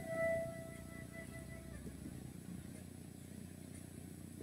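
A flute melody ending on one long held note that fades out over about two seconds, leaving faint room noise.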